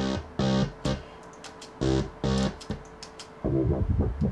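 Synthesized dubstep wobble bass from the Albino 3 software synth: one held note chopped by its LFO into short pulses that come in pairs with gaps between, turning faster and choppier near the end.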